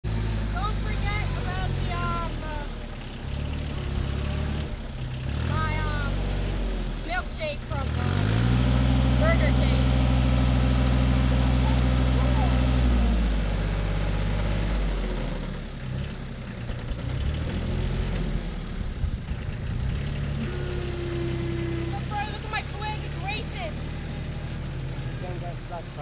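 Compact tractor with a front loader working, its engine running steadily. About eight seconds in, it revs up sharply and holds high for about five seconds, the loudest part, then drops back to a lower speed.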